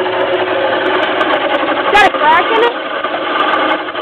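A turning chisel cutting a wooden spindle spun on a hand-cranked great-wheel lathe, giving a steady scraping hiss. There is a sharp knock about two seconds in, and a brief word just after it.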